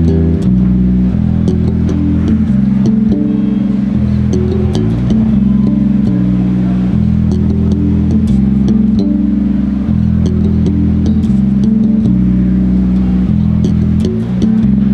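Spector electric bass played fingerstyle through an amp, an original tune of loud, sustained low notes that change every second or so, with string clicks on the attacks.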